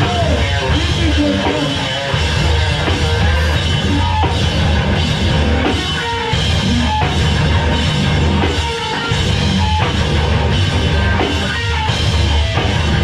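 A hardcore punk band playing live, loud: distorted electric guitars and bass over a drum kit.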